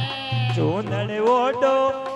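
Electronic keyboard playing a melodic interlude of a Hindi devotional bhajan, with a swooping dip-and-rise in pitch about half a second in, then steadier held notes over a low sustained tone.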